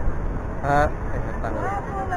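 A man's voice in two short bits, over a steady low outdoor rumble.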